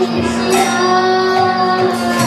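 Devotional kirtan: a high voice sings a chant melody over a steady held drone, with a couple of sharp percussion strikes.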